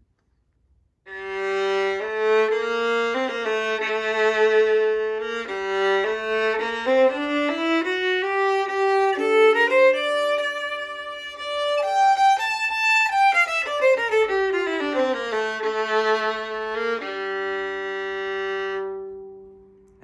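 A full-size (4/4) Struna Classroom violin bowed in a short melodic passage, starting about a second in. It climbs to higher notes in the middle and comes back down to end on a long held low note that fades away. The tone is deep.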